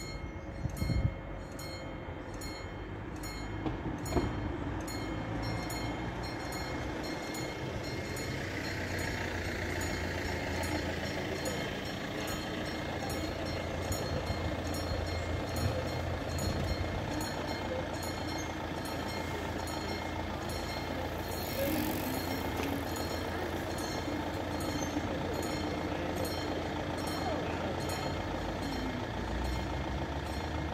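Railway level-crossing bell ringing in steady, evenly spaced strokes while the crossing barriers lower, with a low rumble underneath that builds about eight seconds in.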